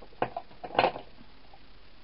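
Cardstock pieces handled on a desk: two quick light taps, then a short rustle just before a second in.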